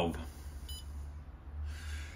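A single short electronic beep from the Pentair Fleck 5800 XTR2 control valve's touchscreen as a menu button is tapped, about two-thirds of a second in. A steady low hum runs underneath.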